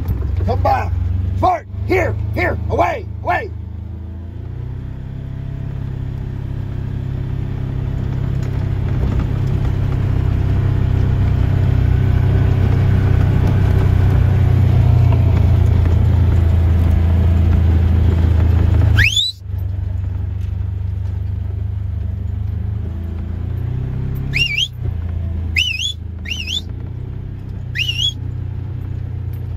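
Side-by-side utility vehicle's engine running steadily, growing louder toward two-thirds of the way through, then dropping suddenly. A few short calls sound in the first few seconds, and sharp rising whistles come once at that drop and several times near the end.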